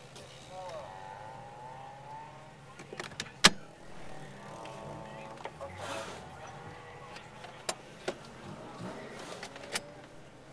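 A car's SOHC engine idling, heard from inside the cabin, under people talking. There is one loud sharp knock about three and a half seconds in and a few lighter clicks near the end.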